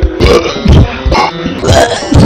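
A man making several loud, throaty, belch-like mouth noises into a handheld microphone, with music playing behind.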